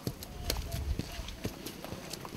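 Irregular light knocks and scuffs, roughly two a second, from a PVC access tube and boots in soft soil as a Watermark soil-moisture sensor on the tube is pressed down into a hole of mud slurry. Faint voices can be heard behind it.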